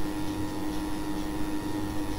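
Steady background hiss with a low, even electrical hum.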